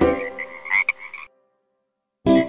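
Cartoon frog croaking sound effect, a quick run of short croaks fading away and stopping abruptly about a second and a quarter in.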